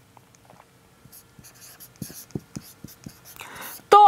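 Marker pen writing on a whiteboard: a run of short, scratchy strokes that starts about a second in and goes on until speech resumes.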